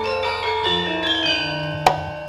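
Javanese gamelan playing: bronze metallophones ring out overlapping, sustained notes in a moving melody, and a single sharp percussive stroke sounds near the end.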